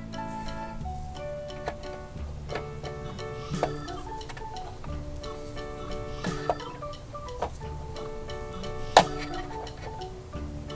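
Gentle background music with held notes, over which a few light clicks and one sharp knock near the end come from small toy figures and wooden toy vehicles being handled and set down.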